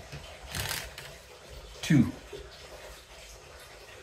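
A game piece being moved along a cardboard game board, with a brief soft rustle about half a second in and quiet room noise otherwise.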